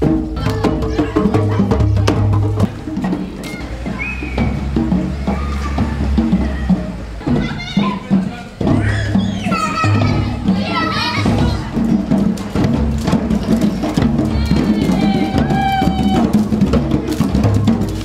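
Music with a steady bass line and wood-block-like percussion, with children's voices rising over it in the middle and again near the end.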